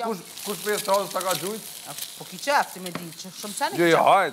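Food sizzling in a frying pan as it is stirred with a wooden spatula, under intermittent talking.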